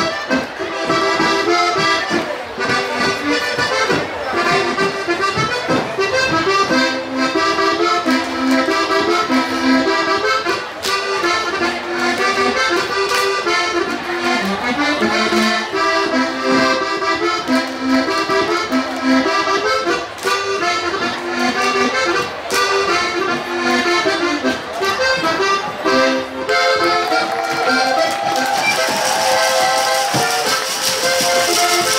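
Accordion playing lively traditional Alpine folk music with a steady dance rhythm, accompanying a Schuhplattler. Sharp hits from the dancers slapping and stomping on the wooden floor cut through at intervals. Near the end a rush of noise rises over the music.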